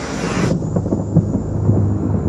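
Trailer sound design: a rising noisy swell that cuts off suddenly about half a second in, then a deep, thunder-like rumble with a low droning tone.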